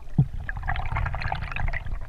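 Underwater ambience heard through a camera housing as the diver swims: a steady low rumble of water moving past the housing, with fine crackling over it. There is one short low thump about a fifth of a second in.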